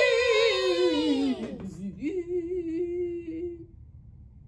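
A woman's voice singing a long, drawn-out "ooo" with wide vibrato. It slides down in pitch about a second and a half in, then holds a lower note that fades away before the end.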